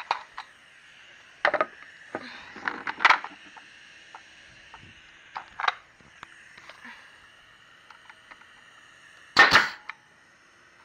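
Pneumatic staple gun firing once near the end, a sharp shot driving a staple through outdoor carpet into a wooden trailer bunk. A few lighter knocks come earlier.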